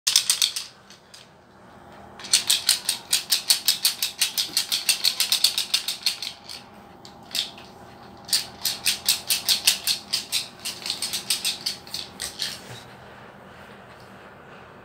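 A small plastic toy rattling in fast runs of sharp clicks, about eight or nine a second, in bursts of a few seconds with short pauses, stopping about a second before the end.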